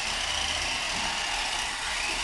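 Small electric toy RC cars' motors and gears whirring steadily, with a constant high whine, as the cars drive.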